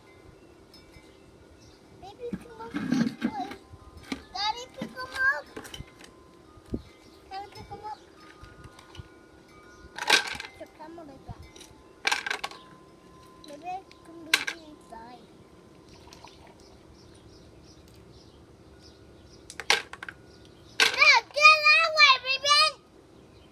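A toddler babbling and vocalizing without words, with a few sharp clacks of toy building blocks being handled and dropped, one every few seconds.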